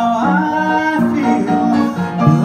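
A male vocalist singing live, bending up into a note near the start and holding it, over grand piano accompaniment.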